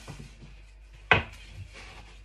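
Long, thin wooden rolling pin (hlaou) working a sheet of phyllo dough on a wooden board: faint rubbing, with one sharp wooden knock about a second in.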